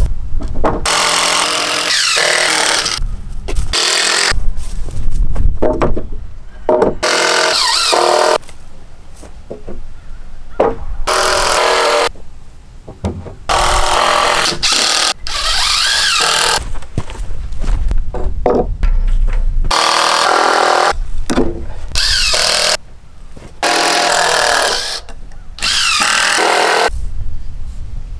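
Cordless power driver driving screws into the barn's treated lumber, in about ten bursts of a second or two each with short pauses between, the motor's pitch sliding up and down as it loads.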